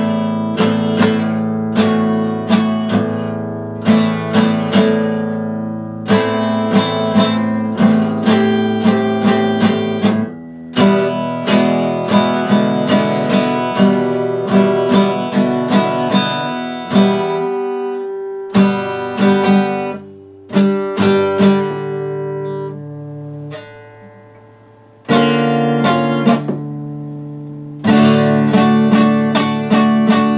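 Epiphone dreadnought acoustic guitar strummed, a run of chords with picked notes between them. Twice in the second half the playing stops and the last chord is left ringing and fading, the longer pause lasting a few seconds, before the strumming starts again.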